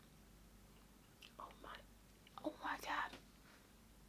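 Quiet, half-voiced speech from a woman: two short mumbled or whispered phrases, about a second in and near the three-second mark, over faint room tone.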